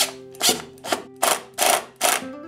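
Cordless impact driver driving a wood screw through a plastic bush into an MDF doorstop in five short bursts, about two a second, eased on and off rather than run to full tightness so the bush does not break. Background music plays underneath.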